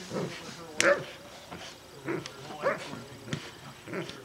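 A young Doberman gripping and tugging a protection bite suit, making short vocal sounds several times over a few seconds. A man's brief exclamation comes about a second in.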